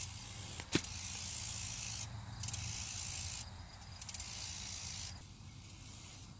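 High-pitched insect buzzing that comes in stretches of about a second and stops between them, over a low steady hum, with one sharp click just under a second in.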